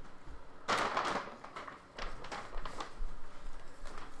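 Rustling and handling noise as a hockey jersey is pulled out and unfolded: a burst of rustle about a second in, then several short scuffs.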